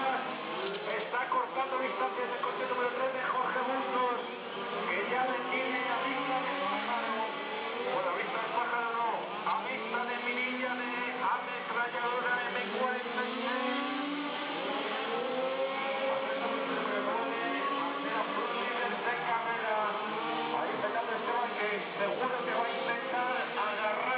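Indistinct voices mixed with background music, steady throughout.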